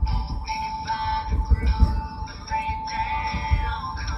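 A song with a sung vocal line plays over the low, uneven rumble of a car driving.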